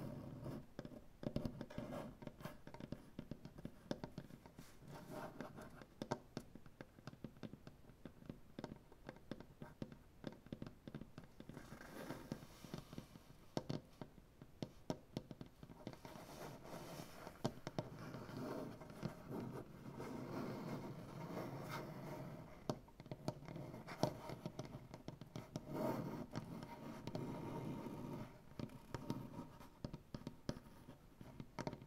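Fingernails and fingertips tapping and scratching on a wooden butcher-block tabletop: quick, irregular taps mixed with stretches of nail scratching on the wood.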